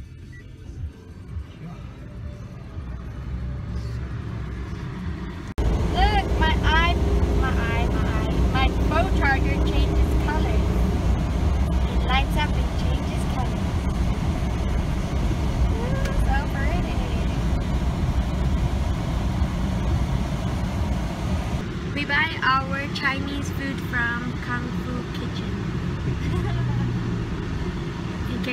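Car cabin noise while driving: a steady low engine and road rumble that becomes much louder about five and a half seconds in. Short high voice sounds rise over it at times.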